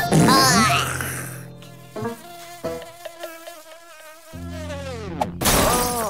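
Cartoon sound effect of a fly buzzing: a wavering, pitched drone that falls in pitch just before five seconds in. A short, loud rush of noise follows near the end.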